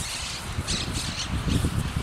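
Wind buffeting the microphone in an uneven low rumble, with a few short bursts of rustling.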